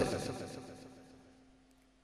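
A man's voice trailing off through a microphone in the first second, then near silence with only a faint steady hum.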